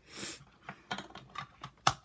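A short rustle, then a quick run of small clicks and taps as makeup containers are handled on a vanity tabletop; the sharpest click comes near the end.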